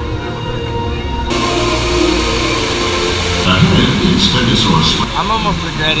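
Ride soundtrack music from loudspeakers, joined about a second in by a sudden steady rushing hiss of water along the ride's river, with voices calling out over it in the second half.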